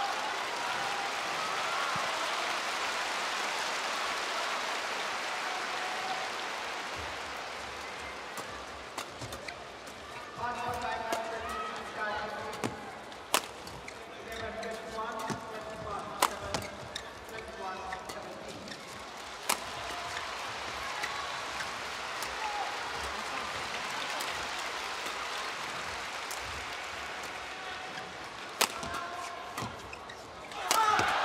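Badminton rally in an arena crowd: a steady hum of spectator voices with shouts rising in the middle, and sharp pops of rackets striking the shuttlecock, a few standing out well above the crowd.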